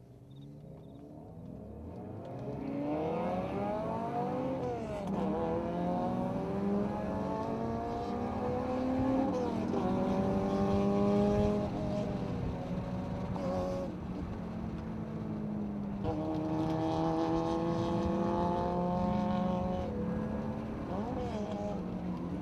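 Straight-six engine of a BMW E36 M3, heard from inside the cabin on a spirited downhill run. It fades in over the first few seconds, then its revs climb and drop back sharply about four times as it shifts or lifts, over steady tyre and road noise.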